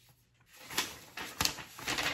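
A folded paper letter being opened by hand: a few short crackles and rustles of paper.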